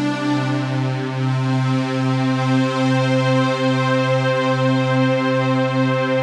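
Roland Juno-Gi synthesizer playing one sustained chord through a budget tube preamp with its gain turned all the way up, the overdrive setting used to test for tube saturation. A new low note enters right at the start and the chord is held steadily throughout.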